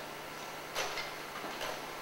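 Faint clicks of a slide projector changing slides: one sharper click a little under a second in and a couple of lighter ticks after it, over a steady low hum.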